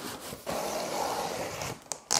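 Box cutter slitting the packing tape along the top seam of a cardboard box: a steady scrape lasting just over a second, followed by a short click near the end.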